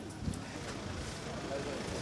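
Low, steady background hubbub of a busy open-air produce market, with indistinct voices and no one speaking up close.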